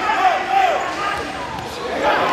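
Spectators shouting at a live boxing bout, with short calls rising and falling in pitch in the first second, over dull thuds from the ring.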